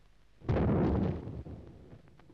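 A heavy artillery gun firing a single shot. One sudden blast comes about half a second in and rumbles away over about a second.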